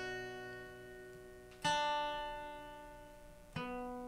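Background song: acoustic guitar chords strummed and left to ring out, with a new chord about every two seconds.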